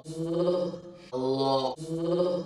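A man with a northern English accent saying the single word "luck" over and over, each vowel drawn out on one steady pitch. His STRUT vowel sounds close to the vowel of "look", as typical of the north of England.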